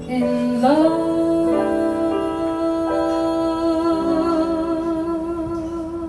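Live jazz band with piano and harmonica playing a slow passage: the lead line slides up about half a second in and then holds one long, wavering note over piano chords.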